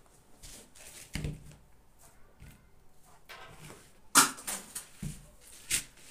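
Light handling sounds of a paper pattern and fabric being moved on a work table: a soft knock about a second in, faint rustling, then a few sharp clicks and taps near the end.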